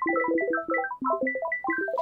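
A rapid, random-sounding scatter of short plucked synthesizer notes, many to a second, each starting sharply and fading quickly. It is a 'twinkling' pattern produced by FL Studio's piano-roll randomizer, voiced on a Sytrus pluck patch over major-seventh chord tones.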